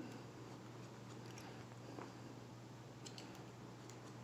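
Faint, soft snips of hair-cutting scissors closing through a held section of damp hair: a few scattered cuts.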